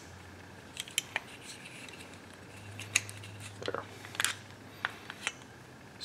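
Screwdriver clicking and scraping against the metal parts of a Kwikset doorknob as it is twisted to release the spindle: a scatter of light, sharp metallic clicks spread unevenly over several seconds.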